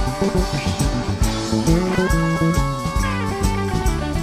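Live rock band playing an instrumental passage: an electric guitar plays lead lines with string bends over bass, drums and keyboard.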